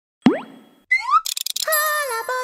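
Cartoon sound effects: a quick rising 'bloop' just after the start, two short rising chirps about a second in, and a rapid burst of bright clicks. Near the end comes a held pitched tone that bends a little.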